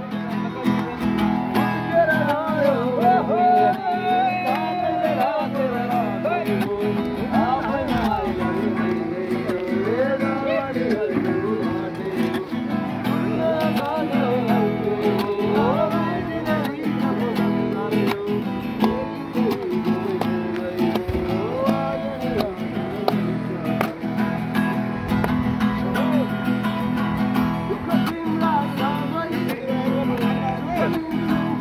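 Acoustic guitar strummed steadily with a man singing a melody over it, live and unaccompanied by anything else.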